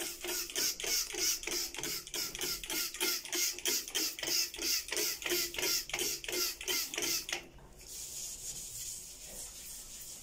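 Cleaner spray bottle pumped rapidly over a ceramic washbasin: a hiss on each squirt, about four a second. It stops about seven and a half seconds in, and a softer steady hiss follows, fitting a sponge scrubbing the basin.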